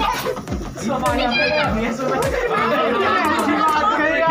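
Several people talking and calling out over each other, children among them, over party music with a steady bass beat.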